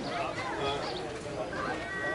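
Indistinct chatter of several voices from players and spectators, with a brief steady high tone near the end.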